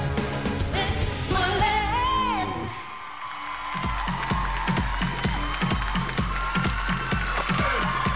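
Pop song performed on stage: a woman sings over the backing music, holding a wavering note about two seconds in. The music thins out briefly near three seconds, then a heavy bass-drum beat comes back, a little over two beats a second.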